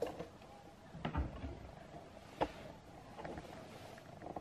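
Kitchen cabinet doors being opened: a few soft clicks and knocks, the sharpest about two and a half seconds in.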